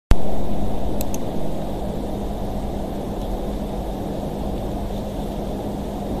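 Steady low rumbling background noise with a faint steady hum, and two quick sharp clicks about a second in.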